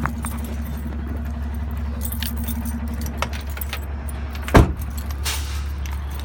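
A man getting out of a car: small clicks and a jingle of keys over a steady low hum, then the car door shut with a single loud thump about four and a half seconds in.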